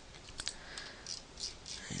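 A few faint clicks of a computer mouse and keyboard being operated, the sharpest right at the start.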